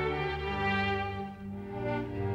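Orchestral film score with bowed strings. Low cello-range notes come in at the start and are held while the higher strings fade.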